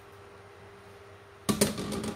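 Faint steady hum, then, about one and a half seconds in, a short clatter of a plastic kitchen utensil against a ceramic bowl as boiled sweet potato leaves are tipped in.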